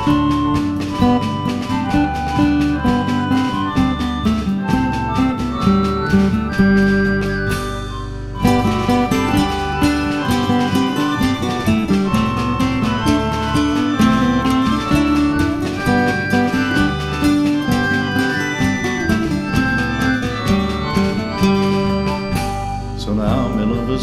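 English folk band playing an instrumental break of a traditional song, with plucked strings and held melody notes over a steady beat; the music thins briefly about eight seconds in.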